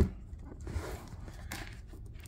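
A white drawer sliding open, with a soft, faint rubbing.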